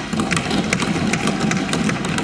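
Members of a legislative assembly thumping their desks in approval of an announcement, a dense, rapid, irregular clatter of many knocks at once.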